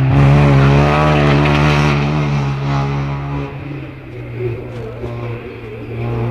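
Rally car engine running hard as the car passes close and pulls away, its note wavering. About three and a half seconds in it falls away to a fainter engine sound.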